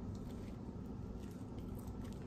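Faint, soft chewing of a mouthful of toasted bacon, egg and cheese sandwich, with no loud crunch.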